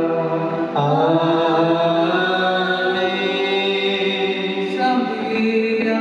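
Slow Syro-Malankara liturgical chant, sung in long held notes that shift pitch only every second or so.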